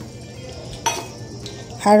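A single short clink of a steel bowl against a stainless-steel mixer-grinder jar about a second in, as chopped onion is tipped into the jar.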